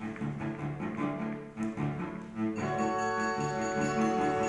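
Live chamber ensemble music, heard as a lo-fi phone recording: a low string instrument plays short repeated notes, and about two and a half seconds in, higher sustained ringing tones join.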